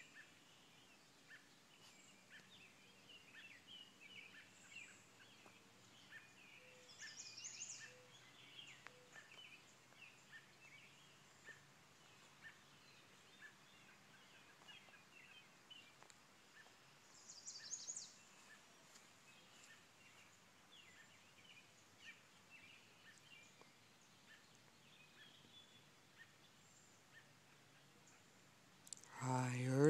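Faint evening birdsong: scattered chirps and short song phrases from several birds throughout, with louder, rapid high trills about seven and seventeen seconds in.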